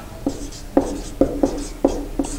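Marker pen writing on a whiteboard: about five short separate strokes as a word is written out.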